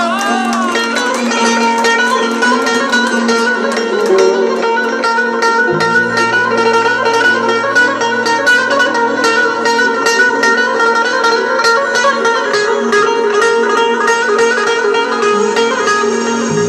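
Long-necked saz (bağlama) played in an instrumental interlude, fast plucked notes over a sustained drone; a lower bass note joins about six seconds in.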